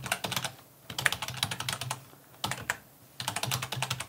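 Typing on a computer keyboard: quick runs of keystrokes with short pauses between them.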